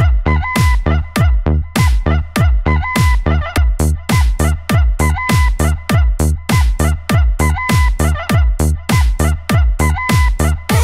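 Electronic dance remix with a heavy, steady kick-drum beat and repeated sampled rooster crows.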